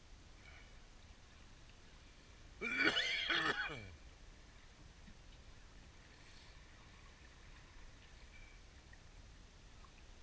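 A man's brief wordless vocal sound, about a second and a half long, that slides down in pitch at the end.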